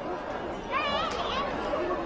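Voices of monks in debate: one man calls out in a wavering voice about a second in, over the steady chatter of a crowd.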